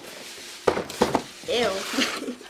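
Cardboard box lid being pulled open, the cardboard scraping and the shredded crinkle-paper fill rustling in short, sharp bursts about two-thirds of a second and a second in.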